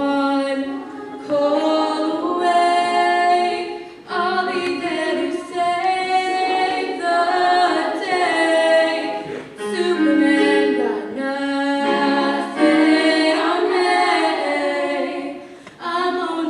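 Girls' choir singing a cappella, several voices in parts, the phrases breaking off briefly every few seconds.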